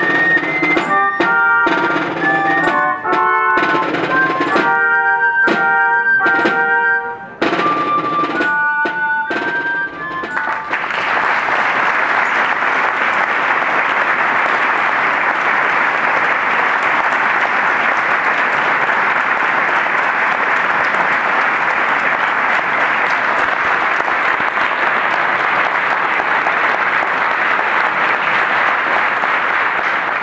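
A melody played over drum beats for the first ten seconds or so, then a crowd applauding steadily for the rest of the time, fading out at the end.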